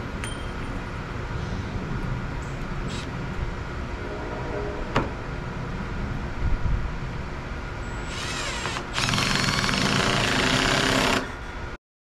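Red Milwaukee cordless drill driving two-and-a-half-inch corrosion-resistant screws through a metal weatherproof box into the wood trim. It runs briefly about eight seconds in, then again for about two seconds, louder, over a steady background hum.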